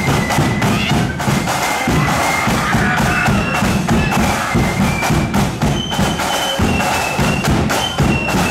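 Marching flute band playing a tune: flutes carry the melody in held notes over a steady beat of bass and side drums.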